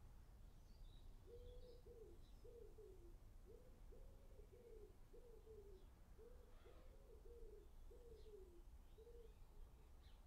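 A dove cooing faintly: a run of soft, low coos in short phrases, some falling away at the end, from about a second in until near the end. Faint chirps of small birds come through as well.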